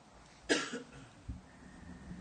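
A person coughs once, short and sudden, about half a second in, with a fainter low throat sound a moment later.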